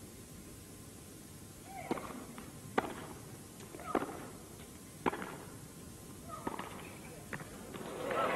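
Tennis ball struck by rackets in a rally, about six sharp hits roughly a second apart, several with a short pitched sound alongside.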